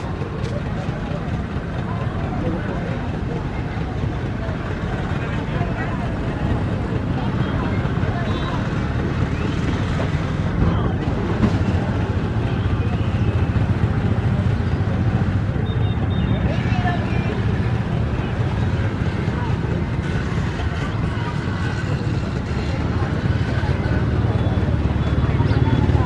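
Steady background din of indistinct voices over a low engine rumble, growing slightly louder toward the end.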